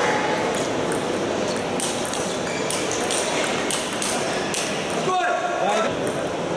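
Table tennis ball clicking off the paddles and the table in a fast rally, several sharp ticks a second over the murmur of a hall crowd. A short shout comes about five seconds in.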